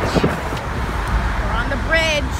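Steady road traffic noise with a low rumble, broken by brief snatches of voices.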